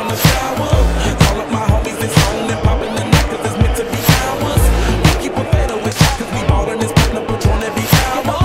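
Hip hop backing track with a steady beat, a hard hit about once a second, and deep bass notes.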